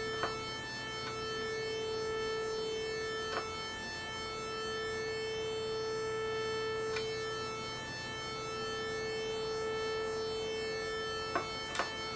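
Kiwi-3P analog synthesizer holding a steady A440 note from two mixed sawtooth oscillators, the level slowly swelling and fading about once every four seconds. This slow beating shows the two oscillators are very nearly in tune. A few faint clicks sound over it.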